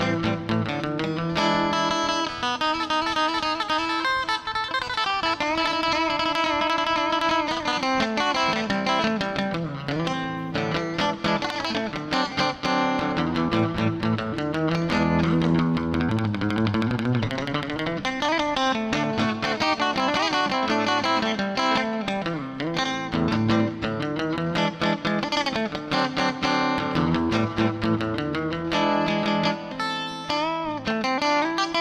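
Ibanez acoustic-electric guitar played live in a continuous melodic solo, a steady stream of changing picked notes with a few notes that glide in pitch.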